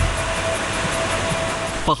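Fast-flowing, turbulent floodwater rushing, a steady noisy wash of water, with a faint steady tone running through it.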